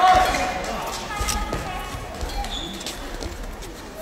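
Badminton rally: rackets striking the shuttlecock with short sharp cracks, and court shoes thudding and squeaking on the hall floor.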